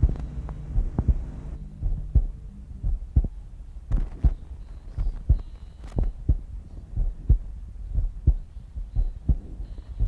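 A heartbeat sound, paired low thumps about once a second in a steady lub-dub rhythm. A low humming tone under it stops about a second and a half in.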